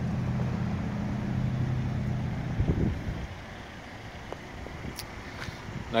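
A car engine idling with a steady low hum that drops away about two and a half seconds in, leaving a quieter stretch with a few faint ticks.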